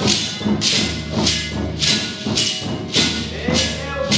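Shekeres (beaded gourd rattles) shaken in a steady beat, a little under two strokes a second, over a strummed acoustic guitar, with voices singing.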